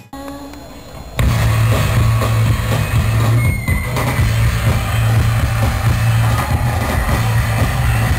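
Rock music that cuts in abruptly about a second in and stays loud, dominated by a heavy, low bass.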